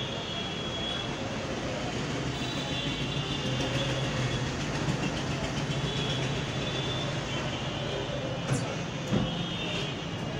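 A steady mechanical drone with a low hum and a faint high whine, with two sharp clicks near the end.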